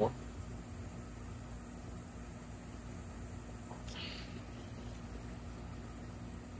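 Quiet, steady outdoor background with a constant high-pitched hiss. A man's voice says a single word at the very start, and a faint brief sound comes about four seconds in.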